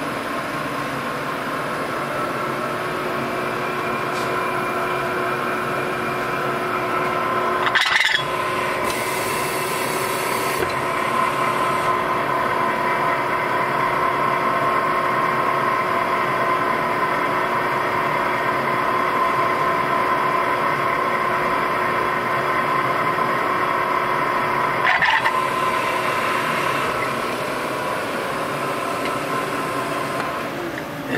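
ProtoTRAK CNC mill running its spindle and end mill inside a small block Ford block's crankcase, in the program that notches the block for stroker crankshaft clearance. A steady whine made of several tones, with two brief louder moments, about 8 seconds in and again near 25 seconds.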